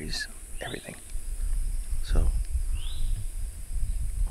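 A man whispering to the camera, with wind rumbling on the microphone.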